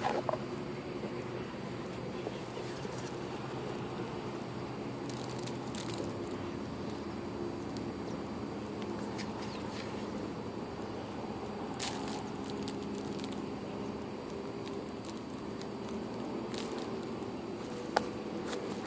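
Faint handling sounds of hands pressing and scraping moist cuscuz dough on a saucer, with a few soft clicks, over a steady low background hum.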